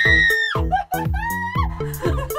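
A woman's high scream held for about half a second, then shorter cries and laughter, over background music.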